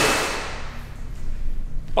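Pressure washer spraying water onto a car, a loud even hiss that fades away over about the first second, leaving a low hum.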